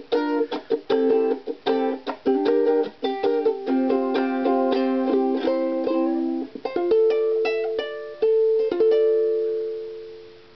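Ukulele strummed in a reggae rhythm, the chords cut short between strokes. About seven seconds in come the closing chords, struck and left to ring out, then fading away near the end.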